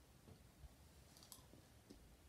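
Near silence: room tone, with a couple of faint short clicks a little past halfway.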